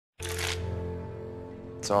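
Film soundtrack audio: a sudden crackling noise burst about a fifth of a second in, over a held musical chord that slowly fades, followed by a man's voice right at the end.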